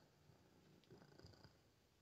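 A house cat purring faintly, with a few soft low pulses near the middle.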